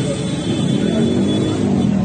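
Street noise of a crowd and traffic at an intersection: cars driving past with a mix of voices, steady throughout.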